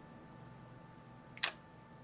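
Nikon D300 DSLR shutter firing once: a single short click about a second and a half in, over a quiet room with a faint steady hum.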